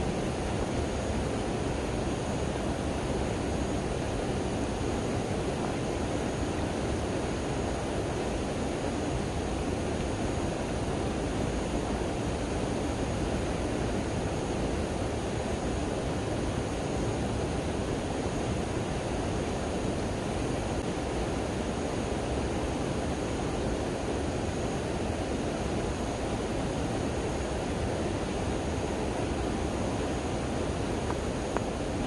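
Shallow stream flowing steadily over sand and stones, giving an even, unbroken noise of running water.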